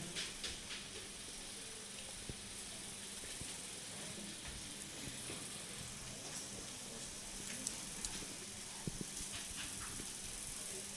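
Steady low hiss of room tone with a faint hum, broken by a few soft clicks and knocks.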